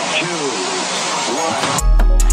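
Sampled rocket-launch countdown: a voice counts the last seconds over a steady rushing noise. Near the end the hip-hop beat comes in with heavy bass and drums.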